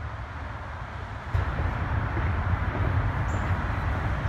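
Steady low rumble of highway traffic from the Georgia 400 overpass, louder from about a second in.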